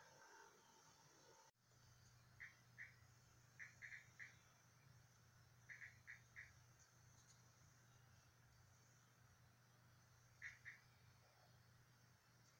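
Near silence: a faint steady low hum, with short, faint high chirps in small groups of two or three that come back a few times.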